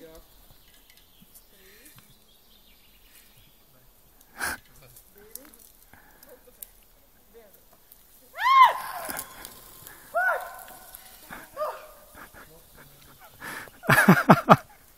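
A voice calling out loudly three times, high and drawn out, each call rising and then falling in pitch, after a quiet stretch broken by one sharp click. Near the end comes a burst of quick cries falling steeply in pitch as the jumper goes into the air.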